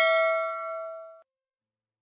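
Ringing tail of a bell 'ding' sound effect, several clear tones together, fading and then cutting off suddenly a little over a second in.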